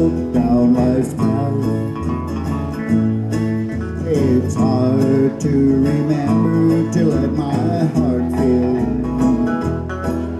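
Live country music: a man singing a slow song with acoustic guitar strumming behind him.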